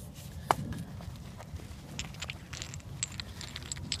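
Handling noise from gear being laid down and a hand rummaging in a leather bag: light scattered clicks and rustling, with one sharp tap about half a second in, over a low rumble.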